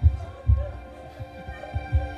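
Heartbeat sound effect: deep thumps, mostly in pairs, over soft music.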